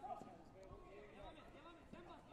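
Faint voices talking in the background, with no other distinct sound.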